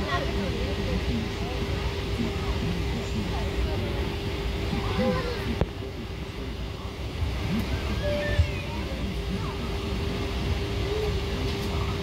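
Steady cabin hum of a parked Boeing 777-300ER, with a constant tone over a low rumble, under faint indistinct voices.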